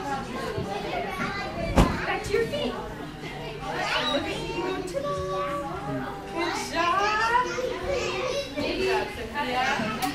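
Young children's voices chattering and calling out in overlapping babble, with one sharp thump about two seconds in.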